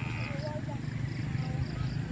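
Faint distant voices over a steady low rumble, with a quick run of short high chirps repeating several times a second.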